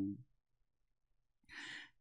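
A man's quick intake of breath through the mouth near the end, after a pause of dead silence, just before he speaks again. At the very start, the falling end of his drawn-out shouted "no" fades out.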